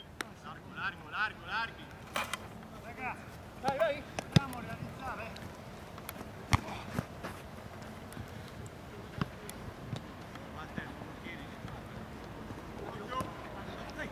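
Players shouting and calling to each other during a football match, mostly in the first few seconds and again near the end, with several sharp knocks of the ball being kicked, the loudest about six and a half seconds in.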